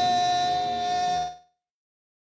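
A singer holds one long, steady note over the band's accompaniment in a gospel song, then all sound cuts out abruptly about a second and a half in, an audio dropout in the stream.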